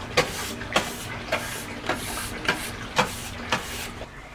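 A small stiff-bristled hand brush scrubbing a sliding door's metal track: a steady run of short scratchy strokes, about two a second.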